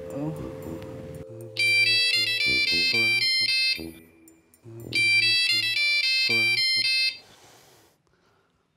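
Mobile phone ringtone playing a bright electronic melody, the same phrase twice with a short pause between, for an incoming call.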